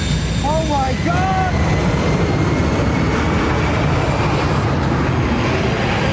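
A man's brief shout near the start, then the loud, steady noise of a large airplane's engines at takeoff power, with a faint rising whine in it.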